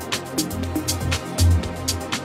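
Electronic dance music with a steady beat: a deep bass pulse under crisp hi-hat ticks about four times a second.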